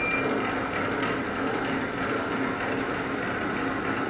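Roll-to-sheet cutting and slitting machine running, a steady mechanical noise with a faint low hum.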